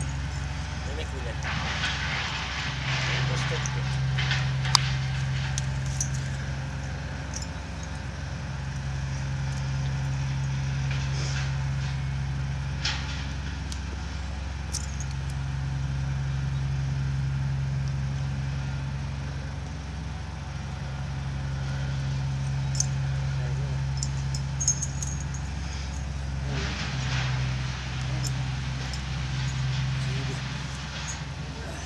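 A motor vehicle engine idling steadily, a low hum that swells and fades every few seconds, with a few light metallic clicks from the horse's halter and lead being handled.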